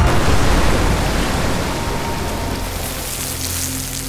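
Underwater bomb explosion: a sudden burst of rushing noise as the water erupts, fading slowly, with dramatic music underneath.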